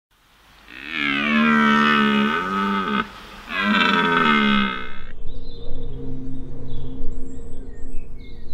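Bull elk bugling twice, each call a long high whistle over a lower growl, the second starting about three and a half seconds in. A low steady drone follows the calls.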